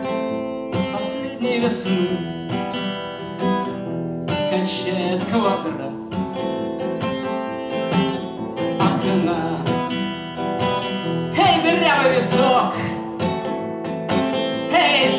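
Acoustic guitar strummed in an instrumental passage of a song, with wordless vocal sounds over it at times, strongest near the end.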